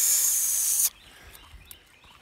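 A loud steady hiss that cuts off abruptly about a second in, leaving only faint background sound.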